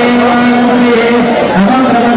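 Men chanting mantras together on a held reciting pitch, dropping briefly to a lower note about one and a half seconds in, then back up.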